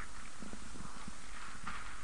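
Steady background hiss with faint, irregular light clicks.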